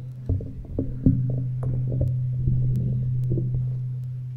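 A steady low hum that swells and then fades near the end, with scattered short knocks and clicks over it.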